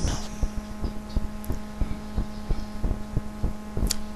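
Steady low electrical hum picked up by a computer microphone, with irregular soft low thumps a few times a second.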